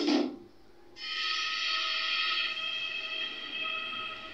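Background music: a rhythmic plucked passage ends just after the start, a short lull follows, then a held chord sounds from about a second in.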